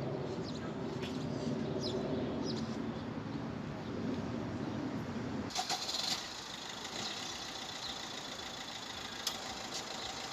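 Outdoor background sound: a low murmur of voices at first. About five and a half seconds in, it changes abruptly to a steady motor hum, with a few clicks at the change and one sharp click near the end.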